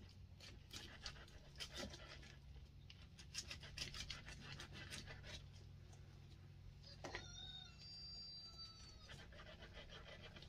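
Kitchen knife slicing through a ripe jackfruit: a quick series of short, crisp cutting strokes over the first five seconds or so. About seven seconds in there is a knock, then a brief high whine lasting about two seconds, over a steady low hum.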